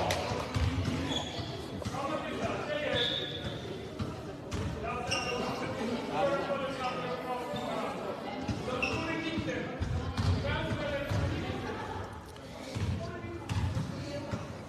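A basketball bouncing now and then on a wooden sports-hall floor, with the voices of players and spectators echoing in the hall.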